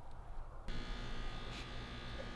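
A faint, steady electrical buzz with a low hum; a thin whine joins it under a second in and holds steady.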